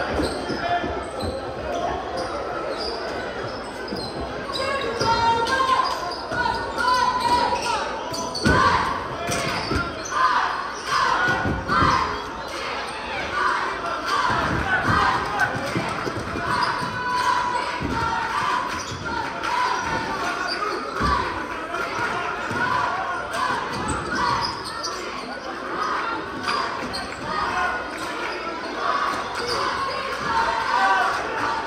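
Basketball bouncing on a hardwood gym floor during live play, the thuds echoing in a large gymnasium over a steady murmur of crowd voices.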